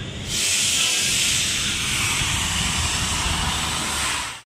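A loud, steady hiss that starts abruptly about a third of a second in and holds even, over a low background rumble.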